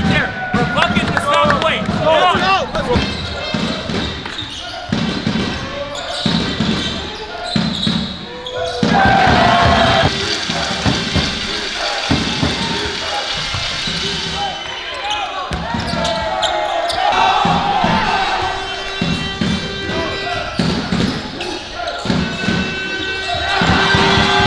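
Basketball game on an indoor hardwood court: the ball bouncing repeatedly on the floor amid players' voices, all echoing in the hall.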